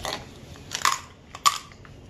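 White slime and a glitter container being handled while glitter is added: a few short crackly clicks and pops, spread over two seconds.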